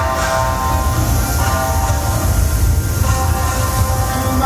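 Yosakoi dance music playing loud: held, sustained chords over a heavy bass.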